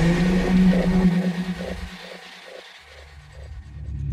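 Electronic sound design: a loud low drone with a deep rumble, plus faint pulses about three times a second. The rumble drops away about two seconds in, then swells back near the end.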